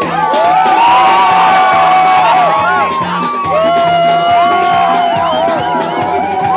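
Live cumbia band playing loudly: a stepping bass line under a long, gliding lead melody, with whoops and cheers from the crowd.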